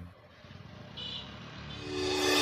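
A short break in the background music. The music cuts out at the start, faint even background noise follows, and music fades back in near the end.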